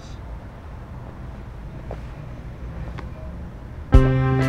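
Low, steady background rumble with no speech, and a faint click about three seconds in. Guitar music starts suddenly right at the end.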